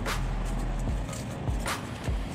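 Polystyrene foam pieces being handled and broken up inside a plastic bin, crackling and squeaking, with two short sharp crackles, one at the start and one near the end, over a steady low background hum.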